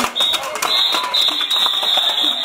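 A shrill pulling whistle blown in long blasts with a few short breaks, signalling the danjiri rope pullers, over their shouts.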